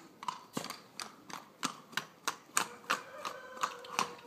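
Horse's hooves striking stone paving as it trots in a circle: a quick, uneven run of sharp clicks, several a second.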